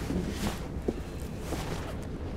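Low steady room noise with faint rustling and a couple of soft clicks as a seated person shifts about.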